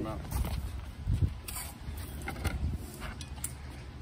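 Scattered low thumps and a few light knocks of footsteps and handling on a wooden deck, the loudest thump about a second in.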